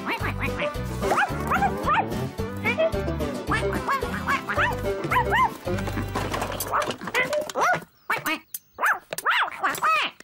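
Cartoon background music with a bouncy, pulsing bass line, over which a voiced puppy yaps and a duckling quacks in short calls. The music drops out about seven seconds in, leaving a brief hush and a few more short calls near the end.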